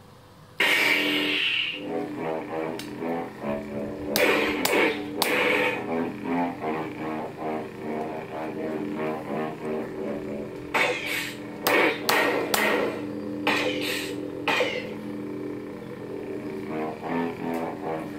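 Proffie-board lightsaber playing its 'Rogue Commander' sound font through its speaker: the blade ignites suddenly about half a second in, then hums with a shifting, musical tone broken by several sharp hits.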